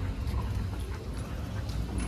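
Micro bully dog snuffling and breathing while being walked on a leash, over a steady low rumble.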